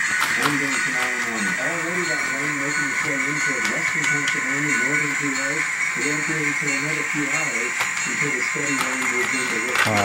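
A radio or television broadcast playing in the room: a voice with music behind it, over a steady hiss.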